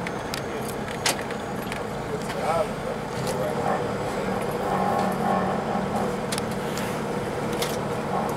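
Cummins ISX diesel of an MCI D4505 coach running at low speed, heard from inside the passenger cabin as a steady hum. Short rattles and clicks from the interior sound throughout.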